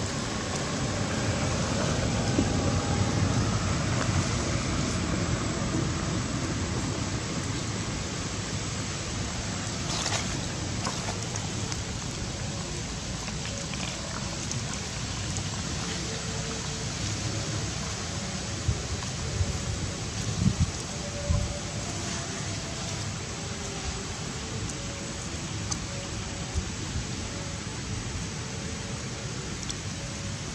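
Steady outdoor background noise, like wind on the microphone, with a few short low thumps about two-thirds of the way through.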